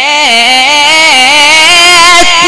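A male qari reciting the Quran in the melodic mujawwad style, drawing one vowel out into a long, loud held note that wavers and steps down and back up in pitch without a break.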